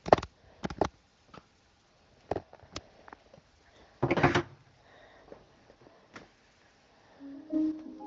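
Scattered light knocks and clinks of a breakfast tray being handled, with a cereal bowl and spoon on it. A short steady humming tone comes in near the end.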